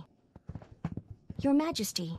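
A few quick, light footsteps at uneven spacing, then a voice calling near the end.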